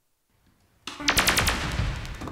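Drums come in suddenly about a second in, after near silence, with a rapid flurry of sharp strikes over a heavy low rumble: the opening of a recorded percussion track.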